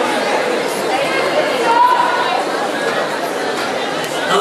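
Audience in a large hall talking and calling out all at once, with one voice standing out briefly about two seconds in.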